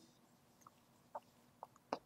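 Chalk tapping on a blackboard while a word is being written: a few faint, short clicks about half a second apart, the last the loudest.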